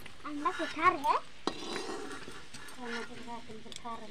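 Metal spatula scraping and clinking against a steel kadhai and plate as fried boiled eggs are lifted out of the oil, with a sharp click about a second and a half in. Voices are heard in the background.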